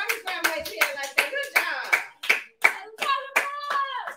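Hand clapping by a few people, a quick, uneven string of claps about three or four a second, celebrating a good play, with a wordless voice cheering over them.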